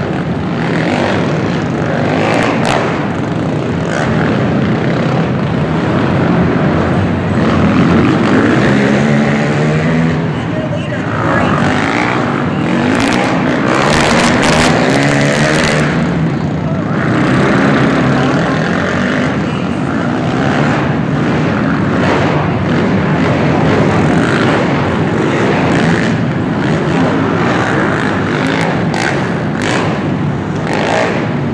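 Several racing quad (ATV) engines revving hard together, their pitch repeatedly rising and falling with the throttle as they race over the dirt jumps; loud and continuous.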